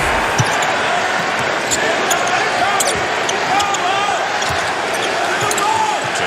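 Basketball game on a hardwood court: a ball dribbling over steady arena crowd noise. Short sneaker squeaks come in from about halfway through.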